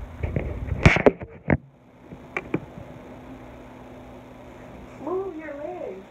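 Phone handling noise: knocks and rubbing in the first second and a half as the phone is moved and set down, with a single click a little later. Near the end comes a drawn-out vocal sound whose pitch wavers up and down.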